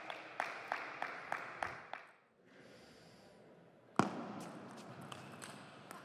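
Table tennis ball bouncing repeatedly, about three clicks a second for two seconds, then after a short pause one sharp, louder hit and a few more ball clicks as play goes on.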